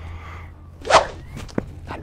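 A single quick whoosh sound effect about a second in, followed by a short sharp click, marking a superfast dash.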